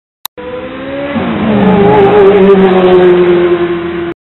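Recorded car sound effect: after a short click, a car engine starts and rises in pitch about a second in, then holds at a steady pitch as the car drives off.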